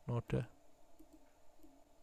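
A short spoken syllable or two, then faint clicking from a stylus as a word is handwritten on a digital slide.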